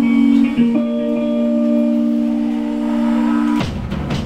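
Electric guitars holding a sustained chord that shifts once about half a second in, then cut off sharply near the end as the song finishes. The crowd's cheering and yelling breaks in right after.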